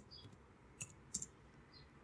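Two faint computer keyboard keystrokes about half a second apart, with a softer click near the end, over quiet room tone.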